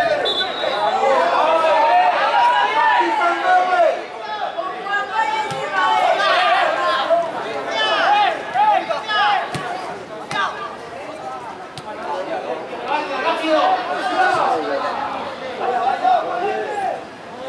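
Overlapping chatter of several people talking and calling out at once, with no break.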